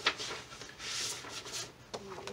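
Paper rustling and sliding as items are drawn out of a large paper envelope, with a sharp click at the start and another near the end.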